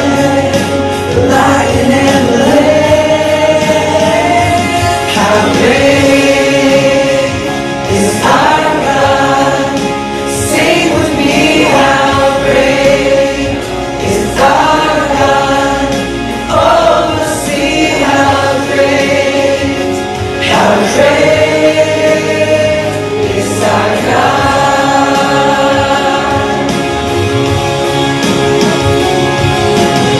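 A small group of women singing a Christian worship song together into microphones, amplified through the room's speakers, in sustained phrases that break every few seconds.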